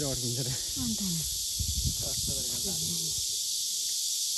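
A steady, high-pitched drone of summer insects in the trees. A voice talks quietly in short snatches over it during the first three seconds.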